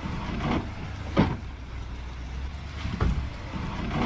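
Chevy Silverado ZR2's 6.2-litre V8 running at low revs as the truck crawls over rocks, with several sharp knocks from the truck meeting the rock. The loudest knock comes about a second in.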